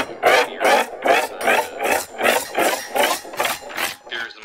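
A rhythmic rasping, scraping noise in an electronic track, about three pulses a second, repeating evenly.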